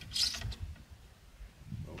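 Ramrod scraping inside the barrel of a Pedersoli Northwest trade gun as a tight nitro card wad is pushed down onto the powder charge, with a short rasp about a quarter-second in.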